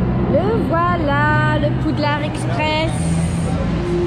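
A steady low rumble as the Hogwarts Express ride train's red coach pulls in alongside the platform, with a high voice giving several wavering exclamations over it from under a second in until near three seconds.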